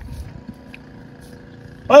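Low, steady rumble of a distant vehicle engine with a faint hum, then a man's loud shouting starts near the end.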